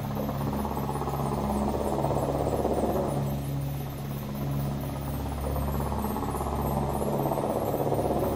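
Dark ambient drone closing out a gothic metal track: a low sustained hum with a whooshing noise above it that swells and fades twice, with no distinct notes or beat.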